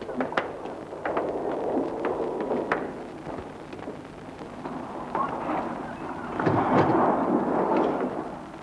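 Fishing crew moving about on a boat's deck: scattered knocks and footfalls over a rumbling background noise, growing busier near the end.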